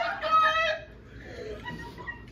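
A woman's high-pitched laugh in the first second, then quiet.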